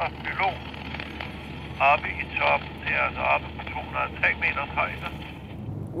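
Speech over a two-way radio, thin and crackly, in short phrases, over the steady low rumble of a moving vehicle's cab.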